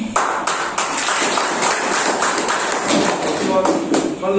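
A small group clapping: a brief round of applause made of many quick, sharp hand claps, with a voice starting again near the end.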